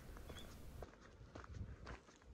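Faint footsteps on a gravel path, a few soft steps.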